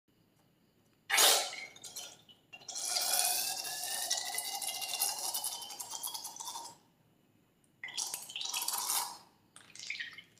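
Scissors snipping through the rubber neck of a slime-filled balloon with one sharp cut about a second in, then thick slime squeezed out through the cut: a long wet squelching stream of about four seconds carrying a faint, slightly rising whistle, followed by two shorter squelches near the end.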